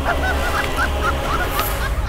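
A man laughing loudly in quick, repeated 'ha-ha' bursts, about five a second, over a steady low background-music drone.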